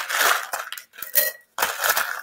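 Dried pasta and rice rattling and rustling against a plastic tub as a hand stirs and scoops through them, in about three short spurts.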